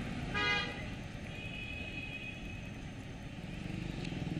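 Road traffic with a steady low rumble, and a vehicle horn honking briefly about half a second in, followed by a fainter, higher-pitched honk lasting close to a second.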